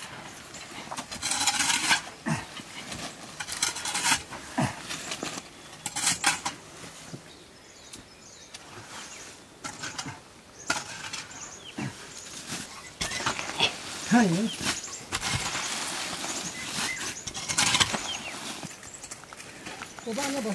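Wet cow dung and leaf-litter bedding being scraped up and flung out of a cowshed, heard as irregular rustling, scraping bursts with short pauses between.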